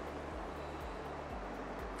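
Steady rush of a fast-flowing river running over rocks, an even noise with no breaks.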